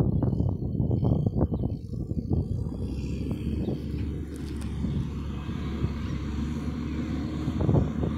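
Diesel engines of a skid steer and a backhoe running on an excavation site, a rough, uneven low rumble at first that settles into a steadier engine drone from about three seconds in.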